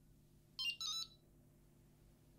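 Wahoo ELEMNT ROAM cycling computer's electronic alert beep: two short chiming notes in quick succession, the second a little longer. It sounds as the selected route finishes loading and the unit asks whether to route to the start.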